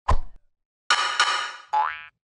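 Cartoon sound effects for an animated logo: a short hit with a low thump at the start, then about a second in a bright, springy ringing sound that trails off and ends in a quick upward slide.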